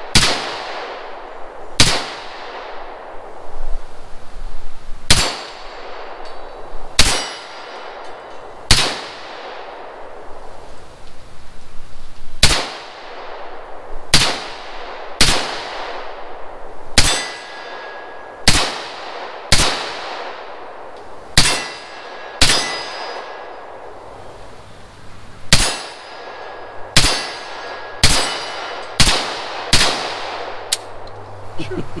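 Semi-automatic AR-style rifle fired about nineteen times at a steady, unhurried pace, one shot every second or two. Several shots are followed by a metallic ring from a struck steel target.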